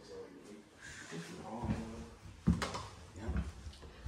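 Quiet, indistinct voices with a single sharp knock about two and a half seconds in.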